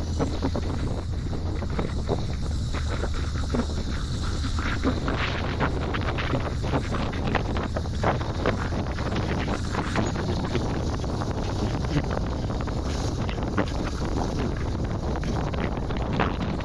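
Heavy wind buffeting the microphone, with a Ford Bronco rock-crawling buggy's engine running underneath as it crawls up a steep sandstone ledge.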